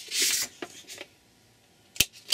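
A sheet of card sliding and rustling on a paper-covered table, with a couple of light taps, then quiet, and a sharp click at the end as a metal hand hole punch is set on the card.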